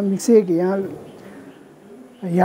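Speech: a man talking for about the first second, then a short pause.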